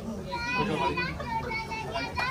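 Crowd chatter with high-pitched children's voices talking over one another, and no music playing.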